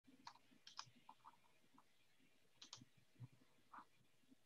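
Faint, irregular clicks of a computer keyboard and mouse being used, heard over a video call, against near silence.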